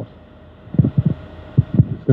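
Handling noise from a handheld microphone as it is passed from one person to another. It is a cluster of dull, low knocks and thumps through the second half.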